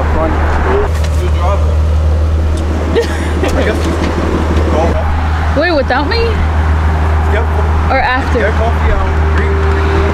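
Infiniti G37 convertible's 3.7-litre V6, fitted with headers, downpipes and an aftermarket exhaust, idling with a steady low drone.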